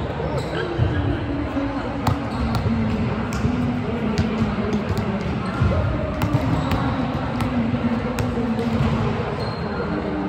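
Sports hall ambience: volleyballs being hit and bouncing on the hard court floor in a string of sharp knocks, over a constant murmur of players' voices from several courts.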